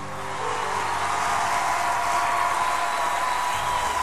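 Applause at the end of a worship song, a steady even rush, while the song's last held chord fades out in the first half second.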